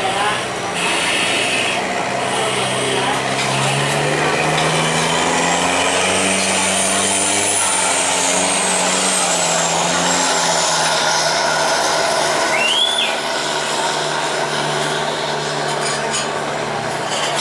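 Engine running steadily, its low hum drifting slowly up and down in pitch over a broad background of noise. A faint high whistle glides across the middle, and a short rising chirp comes about three seconds before the end.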